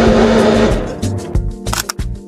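Water pouring from a plastic pitcher into a blender cup, with background music underneath. About a second in, the pouring stops and only the music with a steady beat is left.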